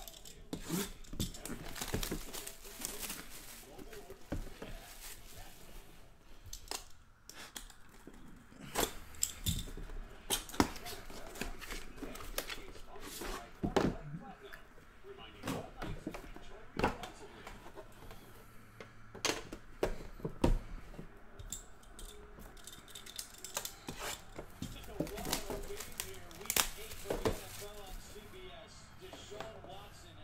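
Hands tearing the plastic wrap off an Upper Deck The Cup hockey box and handling its metal tin. Crinkling and tearing wrapper with many sharp, irregular clicks and knocks.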